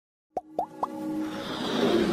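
Three quick plop sound effects about a quarter second apart, each a short upward glide in pitch, then a sound that swells steadily louder: the sound design of an animated logo intro.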